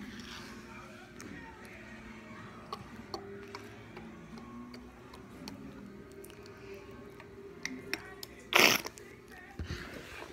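Small clicks and taps of a plastic baby-oil bottle and container as oil is poured over flour, over faint background music, with one loud short knock or rustle near the end.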